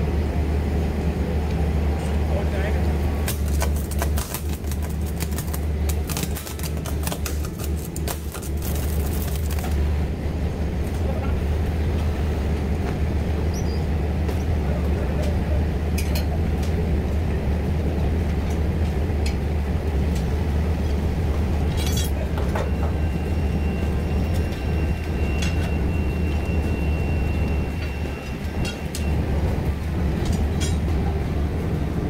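Mobile flash butt rail-welding head clamped over two steel rail ends, running with a steady low hum. About three seconds in, several seconds of dense crackling as electric current flashes across the rail ends to fuse them, and later a steady high tone for several seconds.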